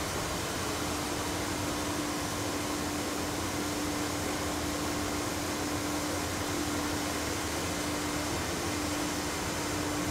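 Steady mechanical hum and hiss of distillery equipment running, with one constant low note and no distinct knocks or pours.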